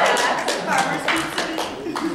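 A small group clapping, irregular hand claps, with voices over them.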